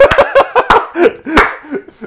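Men laughing hard in bursts, punctuated by a few sharp hand claps.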